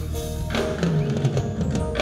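Live gospel band playing Haitian gospel music: drum kit hits over bass notes and sustained chords, with a falling bass line just past the middle.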